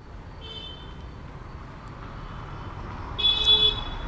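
Street traffic with a steady low rumble and two short car-horn toots, a fainter one about half a second in and a louder one near the end.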